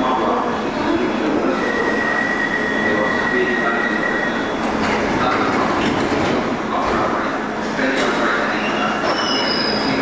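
London Underground 1972 Stock deep-tube train at a station platform: a steady rumble of train and platform noise, with a steady high whine for about three seconds starting just after the first second and brief thin high tones near the end.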